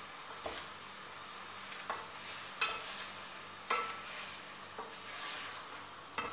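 Diced pork sizzling as it browns in oil in a stainless-steel pan, stirred with a wooden spoon that scrapes and knocks against the pan about once a second.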